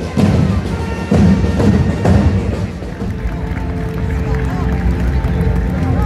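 Procession drums beating loud strokes about a second apart over the first two seconds, then music with long held notes over crowd chatter.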